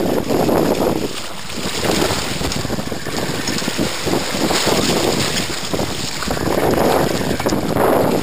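Water splashing and churning as a hooked shark thrashes at the surface beside the boat, in several loud surges, with wind rushing on the microphone.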